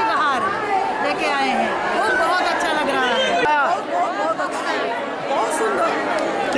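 Women's voices talking over one another: a crowd's chatter with no single voice standing clear.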